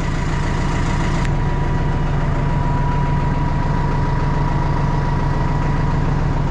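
An engine idling steadily, with a thin steady whine over it.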